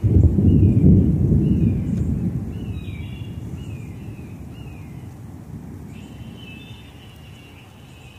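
A clap of thunder breaking suddenly into a deep rumble that rolls on and slowly dies away over several seconds, the storm approaching. A bird keeps calling with short, repeated, down-sliding notes above it.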